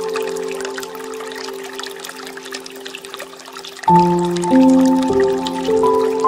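Slow, calm piano music: a held chord fades over the first few seconds, then a new chord is struck about four seconds in, with single notes following. Water trickles and pours from a bamboo fountain spout underneath.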